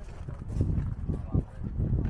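Wind buffeting the camera's microphone as a low rumble, with irregular low thumps.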